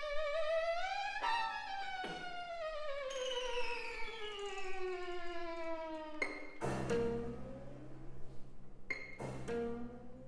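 String quartet and prepared piano playing: a single bowed string with wide vibrato slides up, then glides slowly down in one long glissando, in the manner of a Peking Opera fiddle. About six and a half seconds in, a struck chord with low sustained tones cuts in, and it is struck again near the end.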